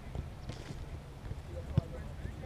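Distant shouting of players on a soccer field, with one sharp thump near the end.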